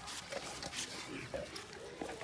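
Saint Bernard sniffing and mouthing at a raw buffalo heart, a string of short, irregular noises.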